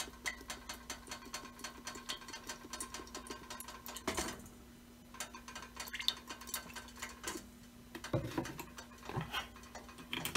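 Cooking oil poured in a thin stream into a stainless steel pot, under rapid, even ticking of about four or five a second. The ticking stops about four seconds in with a knock, and a few light knocks follow near the end.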